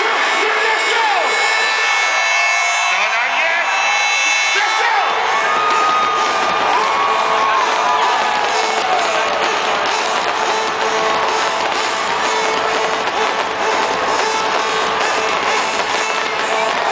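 Loud electronic dance music over a festival sound system, with the crowd cheering and whooping over it; the deep bass comes in about five seconds in.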